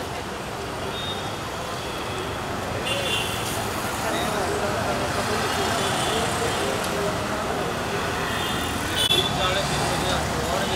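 Street traffic noise with several people talking at once, and a few short high tones now and then.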